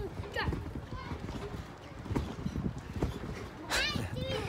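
Children bouncing on trampolines: irregular soft thumps of feet landing on the mats, with a child's high voice rising near the end.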